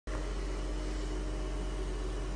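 Steady background hum and hiss with a low rumble and a few faint steady tones, like a fan or air conditioner running; nothing else happens.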